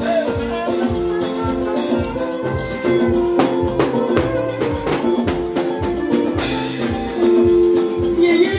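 Live band music without vocals: a steady drum beat with shakers over sustained keyboard and bass notes. It grows louder about seven seconds in.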